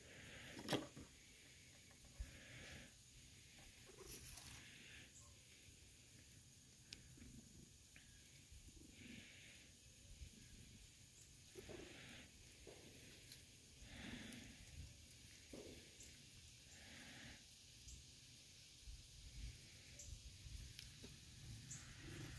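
Near silence, with faint soft rustles now and then from a hand stroking a cat's fur.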